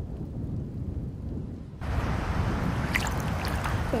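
Thunderstorm sound bed: a steady low rumble of thunder, joined about two seconds in by a brighter hiss of heavy rain.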